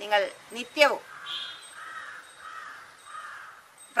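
A crow cawing, four harsh caws in a row, fainter than the nearby speaking voice.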